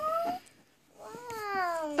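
A high-pitched voice, most likely one of the girls, makes drawn-out wordless vocal sounds. One rises and cuts off, then after a short pause a long one slowly falls in pitch.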